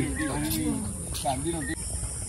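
Voices talking in the first part, over a steady high-pitched drone of insects that carries on after the talk stops.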